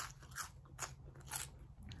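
A person biting into and chewing a crunchy curly fry, a crisp crunch about every half second.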